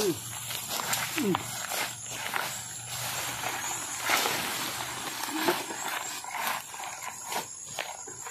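Leaves and vines rustling and crackling as a long bamboo pole is jabbed and dragged through dense undergrowth, with footsteps through the brush.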